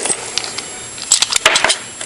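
Small metal lock parts clicking and clinking as they are handled: a sharp click at the start, then a quick run of clicks about a second in.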